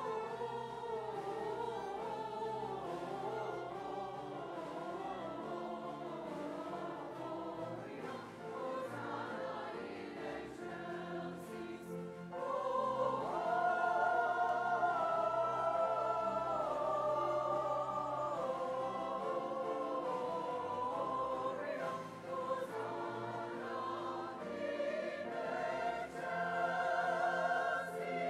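Church choir singing with a string orchestra accompanying, growing louder about halfway through.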